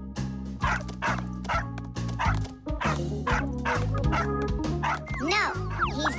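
A small cartoon dog barking repeatedly in quick, yappy barks, about three a second, over background music, with a few short gliding tones near the end.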